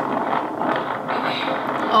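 Wind buffeting an outdoor camera microphone, a steady rushing noise with no windscreen on the mic; the wind noise is really loud.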